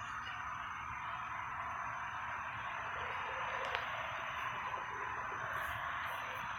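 Steady background hiss with a faint high tone running through it, and one small click just before four seconds in.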